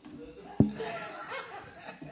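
People laughing, with a single sharp thump just over half a second in that is the loudest sound.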